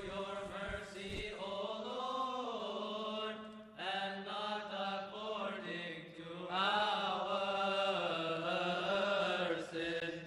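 Voices chanting a slow, melismatic Coptic liturgical response in unison over a steady held low note. The chant pauses briefly a little under four seconds in and comes back louder after about six and a half seconds.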